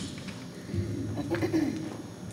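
Low voices of a small vocal ensemble singing soft held notes, about a second long in the second half.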